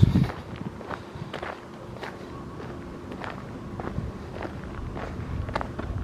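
Footsteps on dry desert dirt, about two steps a second.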